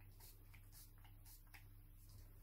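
Faint, short swishes at an even pace of about two a second as a reborn doll's hair is worked on by hand.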